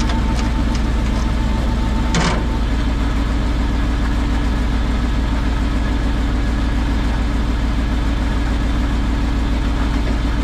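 Rollback tow truck's engine idling steadily, with a short metallic clank about two seconds in.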